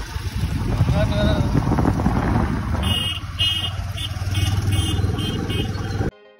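Rumble of a moving vehicle with wind buffeting the microphone. In the second half there is a run of about eight short, high-pitched beeps.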